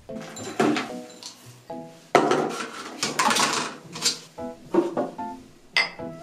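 Background music of short separate notes, over dry pet kibble rattling as it is poured into a stoneware food bowl, loudest for about a second and a half starting two seconds in, with a few sharp clicks of pellets and bowl.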